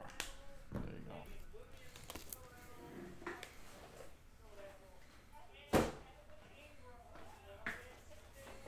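Faint, indistinct talking in a small room with a few light clicks, and one sharp knock a little past the middle that is the loudest sound.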